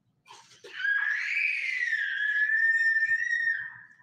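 A small child's long, high-pitched scream that rises in pitch at first and then holds steady for about three seconds before fading.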